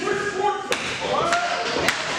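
Sharp hand claps at a steady beat, roughly two a second, over shouting voices from a wrestling crowd in a hall.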